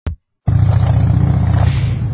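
A short click, then about half a second in a loud, steady low rumble of outdoor background noise begins on the camcorder microphone.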